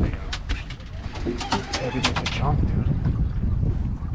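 Wind buffeting the microphone on an open boat, a steady low rumble. Over it comes a quick run of sharp clicks and knocks in the first two and a half seconds, with some low indistinct voices.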